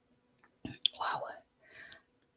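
A person whispering softly, with two sharp clicks, one about a second in and one near the end.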